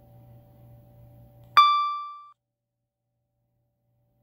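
A single electronic ding about one and a half seconds in: a sudden bright tone with overtones that rings away in under a second. A faint low steady hum runs before it and cuts out with it, leaving dead silence.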